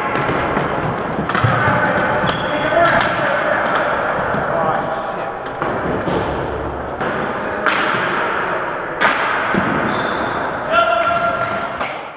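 Floor hockey play on a gym floor: irregular sharp clacks and knocks of sticks and ball hitting the floor, boards and goal, with players' indistinct shouts, all echoing in a large hall.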